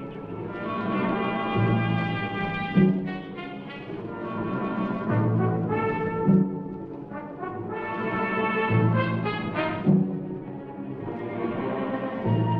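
Orchestral film score with brass carrying long held notes over a low pulse that recurs about once a second.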